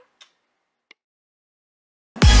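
Near silence: faint room tone with two soft clicks in the first second, then dead silence.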